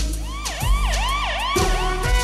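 A siren sound effect wailing up and down fast, about three rises and falls a second, laid over a jazzy jingle with drum hits. The siren stops shortly before the end.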